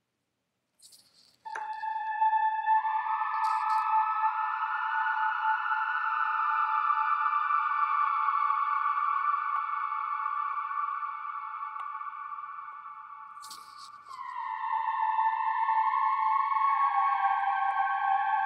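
Logic ES2 synthesizer lead patch played through heavy reverb and stereo delay: after a second and a half of near silence, a held note swells in softly and sustains in a long wash of reverb. Past the two-thirds mark new notes take over and step slightly lower near the end, with a few faint clicks along the way.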